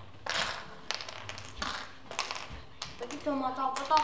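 Small plastic pieces clicking and clattering in a tray as children handle them, in short bursts; a boy starts talking near the end.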